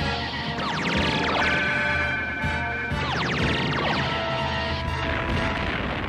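Dramatic orchestral cartoon score with sci-fi weapon sound effects of a missile and laser attack. Bursts of falling whistling sweeps come about one second and again three seconds in, over a steady low drone.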